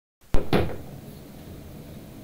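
A sharp click and then a hollow knock about half a second in, fading quickly to low room noise: handling noise as the player settles with his acoustic guitar before strumming.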